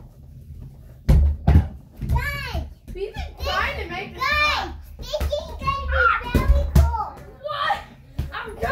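Children shouting and squealing in play, with no clear words. Between the cries come a few sharp thuds of a small toy basketball bouncing on the floor: two about a second in and two more near the end.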